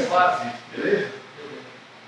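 A man's voice trailing off, with a brief murmur about a second in, then quiet room tone.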